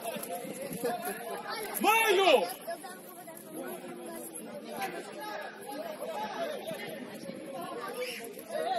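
Indistinct shouting and chatter of football players on the pitch, with one loud call about two seconds in.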